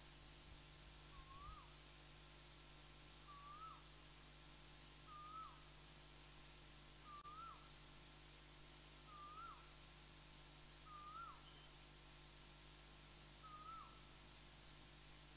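A bird calling faintly: a short whistled note that rises and then drops sharply, repeated seven times about every two seconds, over a steady low hum.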